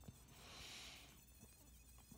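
Near silence with the faint high-pitched whine of a Dremel rotary tool running a spherical burr in walnut, rising and fading within about the first second.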